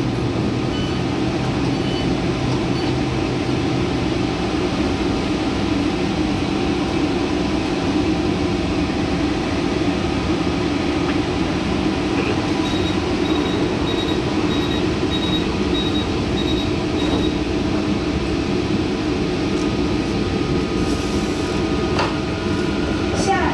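Steady hum and air-conditioning noise of a Taichung MRT Green Line metro train standing at a station platform. Midway a run of about nine short, high beeps sounds, roughly two a second.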